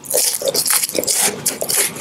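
Close-miked biting and chewing of a Bonobon chocolate bonbon: a rapid, irregular run of crunches and wet mouth sounds as the ball is broken up.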